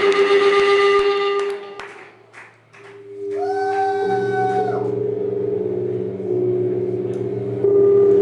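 Live noise-rock: a sustained electric guitar feedback drone with scattered drumstick taps on cymbals in the first two seconds. The sound thins out briefly, a higher feedback whine holds for about a second, then a low droning amp hum takes over and grows louder near the end.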